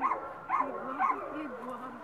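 A dog crying out excitedly in short high calls, about two a second, as it jumps up at a person.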